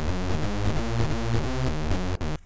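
OXE FM Synth software synthesizer playing its "OldSkool Techno" preset, a hoover-style rave synth sound. It plays a loud, rhythmic run of notes whose pitch shifts about four times a second.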